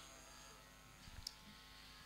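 Near silence: a faint steady electrical hum, with one tiny click a little past the middle.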